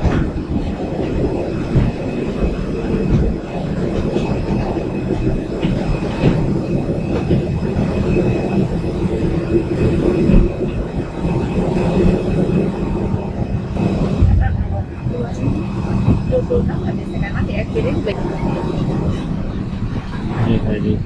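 Steady mechanical rumble and hum with a faint high whine, from a jet bridge and a parked airliner during boarding, with footsteps and rolling luggage mixed in.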